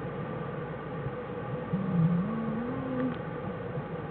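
A black bear cub's short call, wavering and rising in pitch for about a second and a half from near the middle, over the steady hiss and hum of the den microphone.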